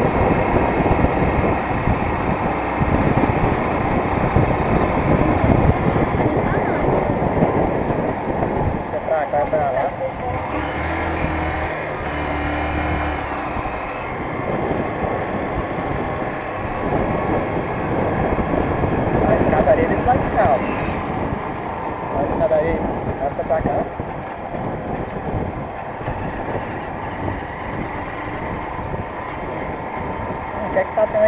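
A small motorcycle's engine running while being ridden through town streets, with wind buffeting the microphone. The engine note holds steadier for a few seconds around the middle.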